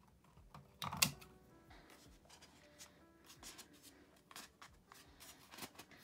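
Pruning shears snipping through willow sticks: one sharp snip about a second in, then lighter clicks and rustles as the cut sticks are handled.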